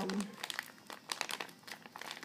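Crinkly packaging handled in the hands, a run of irregular crackles.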